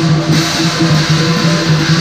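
Southern lion dance percussion played live: a big lion drum, cymbals and gong beating without a break, the cymbals' clash filling the upper range over the drum's steady boom.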